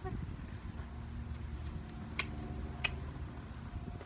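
Two sharp footsteps about two-thirds of a second apart, over a steady low rumble and a faint steady hum.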